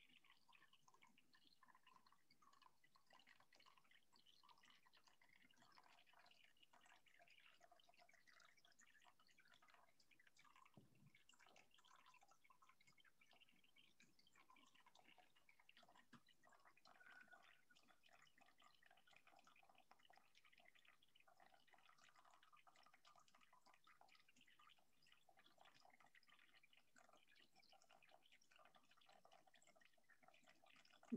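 Near silence, with faint trickling and dripping of water poured slowly through a paper coffee filter in a plastic funnel.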